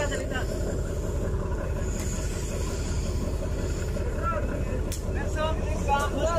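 A boat's engine idling steadily: a continuous low rumble, with faint voices in the background.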